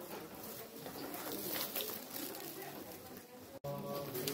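Garden ambience with birds calling and a faint murmur of voices. Near the end the sound drops out for an instant, and steady low pitched tones begin.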